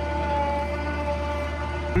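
Tractor-driven feed mixer wagon running at a steady speed: a constant low hum with a steady whine over it.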